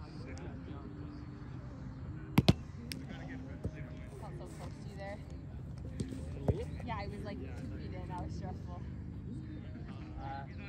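Sharp smacks of a small roundnet (Spikeball) ball being hit by hand and bouncing off the ring net. A close pair about two and a half seconds in is the loudest, and another pair comes about six seconds in, over steady distant chatter from other players.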